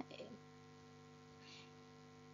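Near silence with a faint, steady electrical hum from the recording chain.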